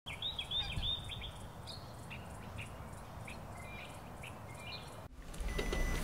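Small birds chirping over a low steady outdoor rumble: a quick run of chirps in the first second, then scattered single chirps. About five seconds in the sound cuts to quieter room tone.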